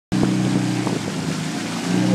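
Outboard motor of a coaching launch running at a steady pace, a constant low engine hum, with a hiss of wind and water over it.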